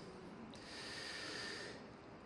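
A Quran reciter drawing one long, faint breath into close microphones, lasting just over a second, between verses of recitation.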